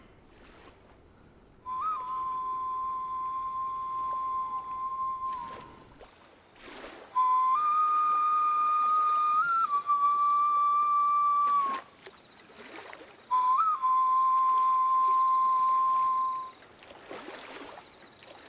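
A small flute blown in three long held notes at nearly the same pitch, each opening with a quick upward flick and separated by short pauses.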